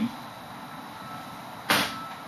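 A whiteboard eraser set down on the board's tray: one short, sharp clack near the end, over quiet room tone.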